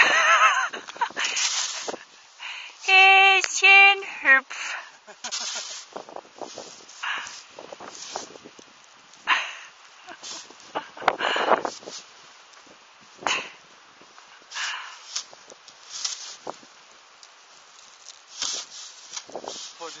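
Snow being scooped and flung with a shovel, heard as short scraping, crunching bursts every second or two, along with the crunch of a German shepherd's paws landing in the snow. A person laughs at the start.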